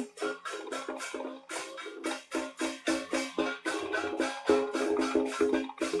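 Beiguan processional percussion: gongs, cymbals and drum struck in a fast, driving rhythm, led by the conductor's drum. The strikes grow louder and closer together about halfway through.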